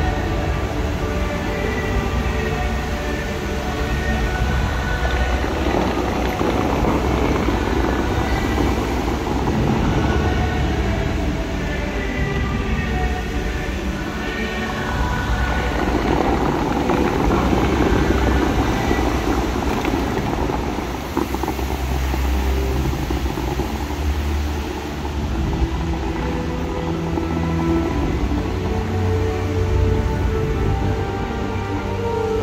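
Music from the Dubai Fountain's outdoor loudspeakers, with long held chords that swell and ebb. Under it runs the hiss of the fountain's water jets shooting up and falling back into the lake.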